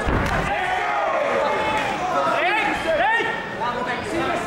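Spectators and cornermen shouting over one another during a kickboxing exchange, with a heavy thud right at the start as punches land.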